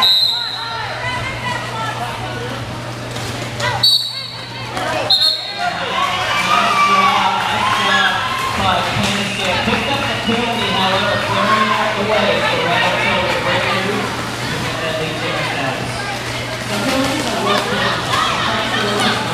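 Three short, high blasts from a roller derby referee's whistle, one at the start and two more about four and five seconds in, over continuous indistinct voices and chatter with a steady low hum underneath.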